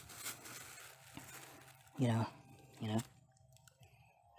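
A plastic bag crinkling as a hand scoops fertilizer granules out of it, with the granules rattling, during the first second or two; a man then says two short words.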